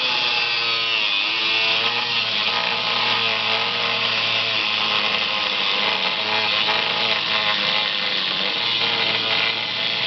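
Ryda cordless angle grinder running with its disc pressed against steel rebar, a continuous loud grinding hiss over the motor's whine. The whine wavers and dips in pitch as the disc is pushed into the bar.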